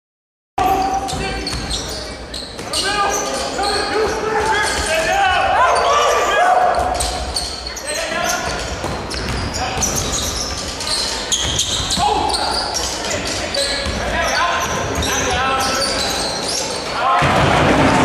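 Live sound of an indoor basketball game: many crowd voices calling and shouting over a basketball bouncing on the court, echoing in a large hall. The noise swells louder about 17 seconds in.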